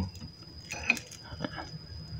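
A few light clicks from hand wire strippers being fitted onto a red power cable to strip its insulation, the sharpest about a second in.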